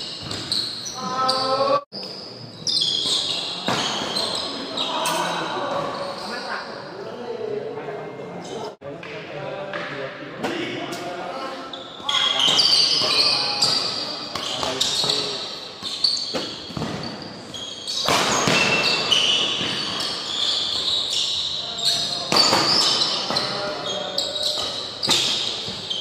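Doubles badminton rally on an indoor court: sharp racket strikes on the shuttlecock and short, high shoe squeaks on the court floor, mixed with players' and onlookers' voices, echoing in a large hall. The sound cuts out briefly twice.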